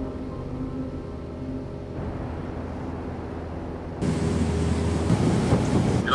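Soft music fades out, then about four seconds in a steady rushing noise with a low rumble cuts in abruptly: a light aircraft in flight, heard from the cockpit.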